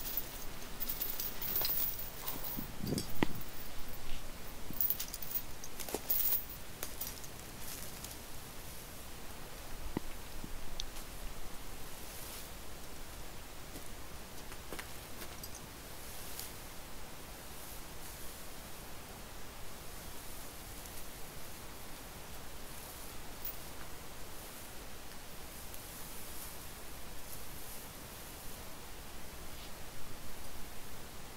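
Shrub foliage and mulch rustling, with a few sharp metallic clicks in the first several seconds, as a steel chain is worked around the base of a shrub. After that only faint rustling and handling sounds remain.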